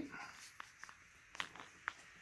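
Faint handling noise: a few light clicks and taps, about four in two seconds, over quiet room tone.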